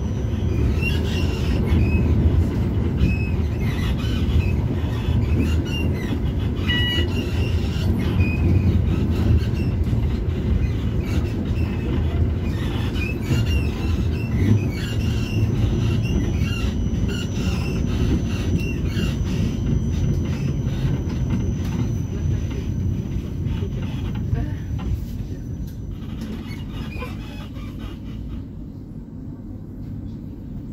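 A tram running along, heard from inside the car: a steady low rumble of steel wheels on the rails, with short high wheel squeals here and there. It grows quieter over the last few seconds.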